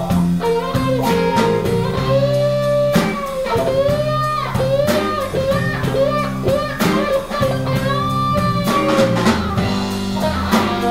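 Live blues band playing an instrumental passage: a lead electric guitar line with bending notes over electric bass, rhythm guitar and drum kit.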